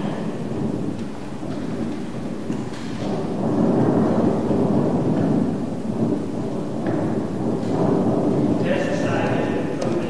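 Low rumbling noise from a film's soundtrack played over loudspeakers in a large hall, growing louder about three seconds in.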